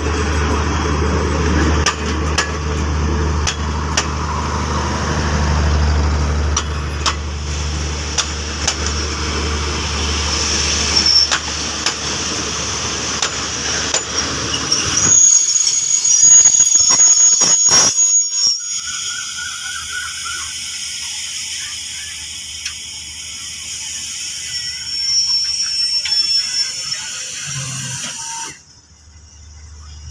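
Passenger coaches of a departing train rolling slowly past: a steady low rumble with wheels clicking over rail joints. About halfway a high-pitched wheel squeal from the steel wheels on the rails rises for a few seconds.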